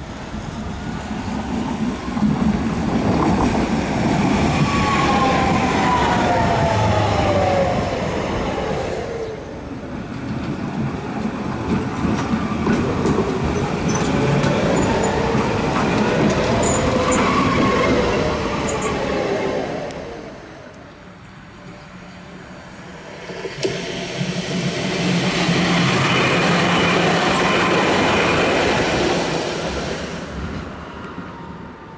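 Tatra KT4D trams running on the rails, with traction-motor whine that glides down in pitch as a tram slows, then rises and falls again as another moves through, over rail and wheel noise. After a brief quieter stretch about two-thirds through, another tram passes with a high wheel squeal.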